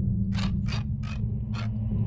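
Horror-trailer sound design: a steady low drone under four short, sharp mechanical clicks, unevenly spaced about a third of a second apart.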